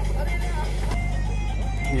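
Diesel engines of a tractor and a backhoe loader running steadily at idle, a low even hum, with background music laid over it.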